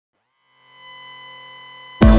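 A quiet synthesized electronic tone, a stack of steady pitches, swells in from silence about half a second in, glides briefly upward as it settles, and then holds level, like a logo-intro sound effect.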